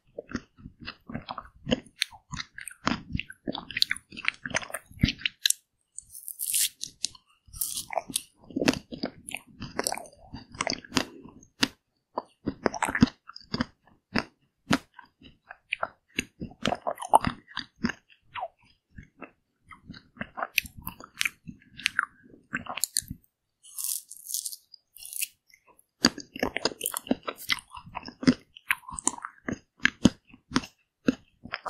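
Close-miked biting and chewing of a coated mint chocolate-chip ice cream bar, its coating crunching in many sharp crackles, with a few short pauses.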